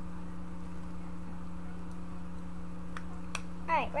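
A steady low electrical hum with no change in pitch, a couple of faint clicks about three seconds in, and a girl starting to speak near the end.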